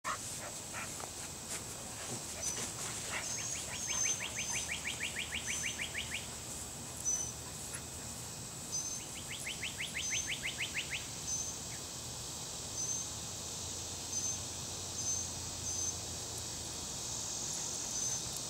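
Summer outdoor ambience of birds and insects: a short high chirp repeats about once a second, two rapid trills of even pulses run for a few seconds each, and a steady high insect drone sits underneath.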